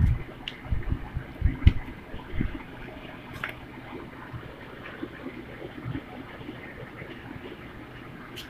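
A sheet of paper being folded and pressed flat by hand on a wooden tabletop: low thumps and soft rustles in the first couple of seconds, then a steady faint hiss.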